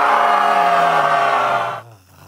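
A man's long, loud yell of rage, one held cry sliding slowly down in pitch and cutting off shortly before the end.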